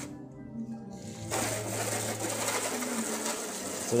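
Garden hose pistol spray nozzle turned on about a second in, then spraying water steadily.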